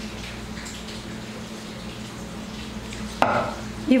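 Soft scraping and a few faint clinks of a spatula and spoon working thick, creamy filling into a plastic-lined metal cake pan, over a steady low hum. A brief louder sound comes about three seconds in.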